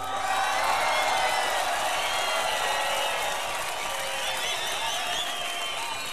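Concert audience cheering and applauding after the song ends, with whistles and whoops over the crowd noise.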